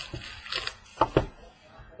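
A stack of trading cards being handled and set down on a tabletop: a few short, sharp taps and clicks, about half a second in and twice around the one-second mark.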